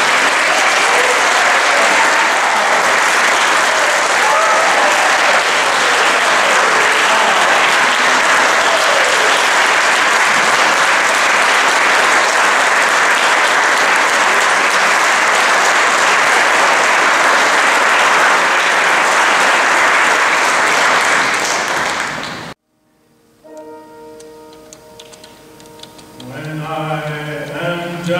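A congregation's standing ovation: loud, sustained clapping that cuts off abruptly about three-quarters of the way through. Soft piano notes follow, and near the end a man starts singing to the piano.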